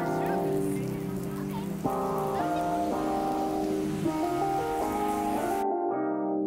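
Instrumental outro music of slow, held chords that change twice, over a steady hiss of rain. Near the end the rain stops abruptly and the chords ring on alone.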